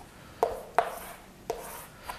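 Chalk knocking and scratching on a chalkboard as lines are drawn, with three sharp taps over the two seconds.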